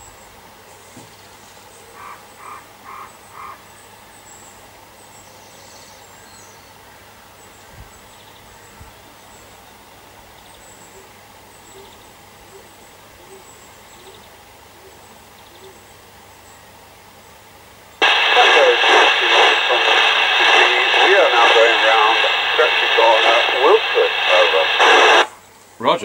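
A UK FM CB radio's loudspeaker receiving a mobile station's transmission. After a long stretch of low background, a loud, thin-sounding voice mixed with static comes through about eighteen seconds in. It lasts about seven seconds and cuts off suddenly near the end.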